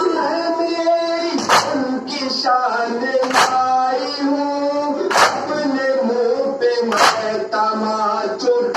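A group of men chanting a noha in unison, with a chest-beating slap (matam) struck together about every two seconds, four strikes in all.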